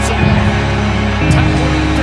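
Music with a steady beat: a heavy low drum hit about once a second under held tones, with light cymbal strokes on top.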